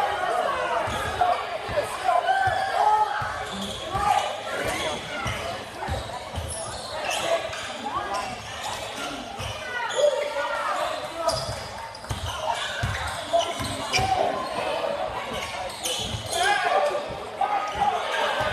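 A basketball dribbled on a hardwood gym floor, a run of short bounces, under steady talk from spectators in a large school gym.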